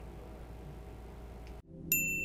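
Faint room tone with a low steady hum. Then a sudden cut, and just before the end a bright, high chime rings out as a logo sting begins.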